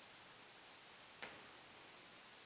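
Near silence: faint steady room hiss, with one faint click a little over a second in.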